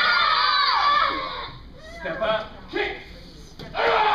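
Several children shouting and yelling at once, high-pitched and overlapping. Loud for the first second, then quieter with a couple of short shouts, and loud again near the end.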